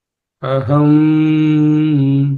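A man chanting the Sanskrit word 'mahah' as one long syllable held on a steady pitch, starting about half a second in.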